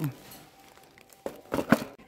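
Packaging handled by hand: after a short lull, a few sharp crinkling clicks and rustles in the second half.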